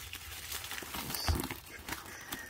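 Folded cardboard and a bubble mailer being handled: light rustling with scattered small taps and clicks, and one duller thump partway through.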